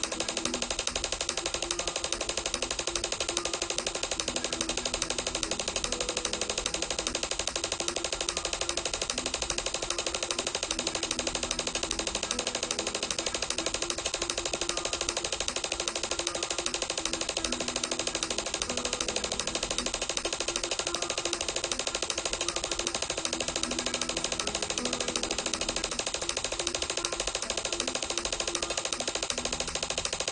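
Flamenco guitar tremolo: a rapid, even stream of plucked nylon-string notes in the p-i-a-m-i finger pattern, played against a metronome app's clicks. The tempo is being pushed up steadily.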